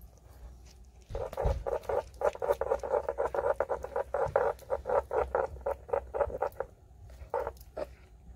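Stone pestle working a wet garlic-and-herb paste in a granite mortar: a quick run of strokes, about five a second, starting about a second in and stopping near seven seconds, with two more just before the end.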